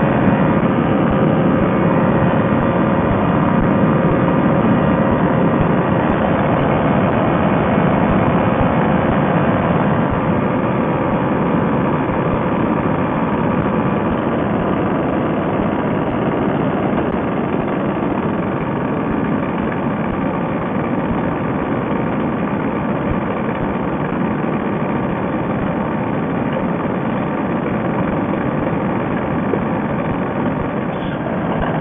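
Fresh Breeze Monster two-stroke paramotor engine and propeller running steadily in flight, a constant drone.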